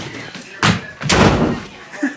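A door slamming shut: a short knock, then a louder bang that dies away.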